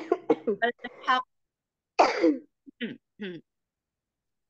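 A woman's voice making a few short halting vocal sounds, then clearing her throat about two seconds in, followed by a couple of brief voice fragments.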